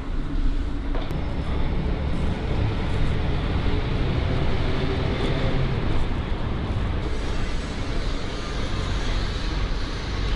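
City street ambience: a steady wash of traffic noise, heaviest in the low end.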